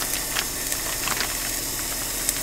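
Steady hiss of a Coleman camp stove's gas burner with onions frying in butter in the pot on it, with a few faint light clicks over it.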